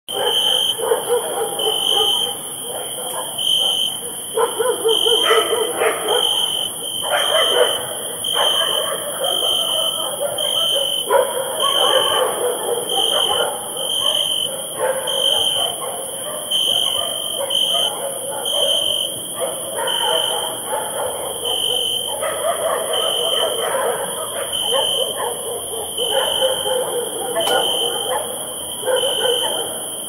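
Dogs barking on and off over a bed of crickets: a cricket chirp repeats evenly about every half second, under a constant high insect hiss.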